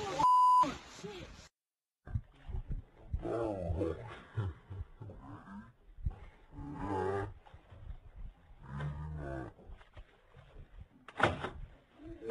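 A short steady beep at the start, then, after a moment of silence, low drawn-out voices and groan-like yells in separate stretches, with a sharp sound near the end.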